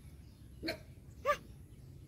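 A dog giving two short yelps about half a second apart, the second one louder.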